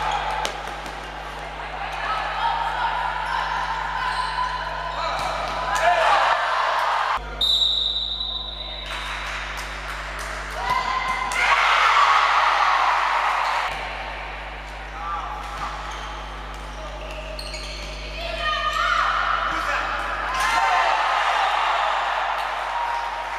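Live sound of an indoor futsal match: players and spectators shouting, echoing in a sports hall, with the ball knocking and bouncing on the court. A short, high referee's whistle sounds about seven seconds in.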